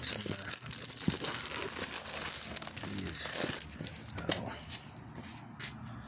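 Plastic wrapping crinkling and rustling as shrink-wrapped packages are handled in a cardboard box, with a few sharp knocks. It dies down near the end.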